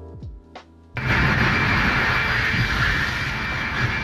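Background music with held notes for about a second, then a cut to loud, steady machinery noise of a ship's steam turbo generators running, a dense hiss over a low rumble.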